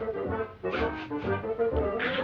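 Orchestral cartoon score with brass, low bass notes on a steady beat about twice a second.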